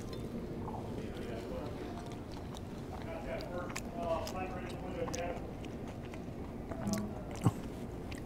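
A person chewing a mouthful of creamy mac and cheese, with a few sharp clicks of a metal fork against the dish, the loudest one near the end.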